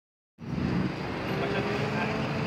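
Road traffic noise with a vehicle engine running steadily nearby and people's voices in the background, starting after a moment of silence at the very beginning.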